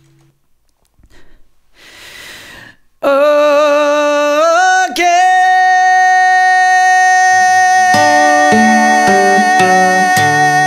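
A male pop-ballad singer takes a breath, then about three seconds in belts one long high note that wavers at first and then holds steady. Near the end an acoustic guitar comes in with strummed chords under the held note.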